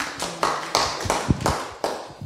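Handheld microphone being handled and passed from one person to another, giving irregular taps and bumps, a couple of them deep thuds.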